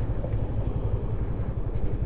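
Motorcycle engine running steadily at low pitch while riding, with road and wind noise on the microphone.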